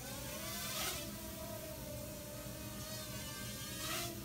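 Small toy quadcopter's electric motors and propellers whirring in flight: a steady whine that wavers slightly in pitch.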